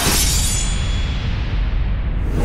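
Logo-sting sound effect: a sudden rushing whoosh at the start that fades away, its high hiss dying out first.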